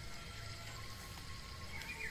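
A pause between spoken lines: faint steady background hiss with a few faint steady tones underneath, no distinct event.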